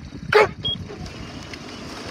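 A single short shouted start command about a third of a second in, right after the starter's "Attention", launching a rowing race. The eights' oars then catch the water on the first strokes over steady rushing noise.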